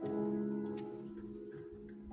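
Concert grand piano: a chord struck right at the start and left to ring, slowly dying away.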